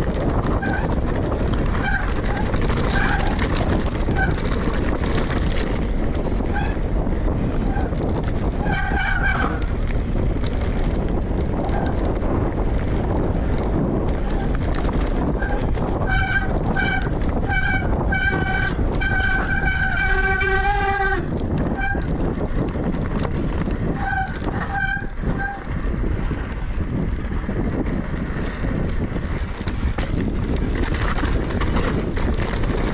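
A Pace RC295 mountain bike descending rocky singletrack: a steady rush of wind on the microphone with the rumble of tyres over gravel and rock. Over it come short, high-pitched squeals from the bike, in scattered bursts and then a quick string of them ending in one longer squeal that drops in pitch.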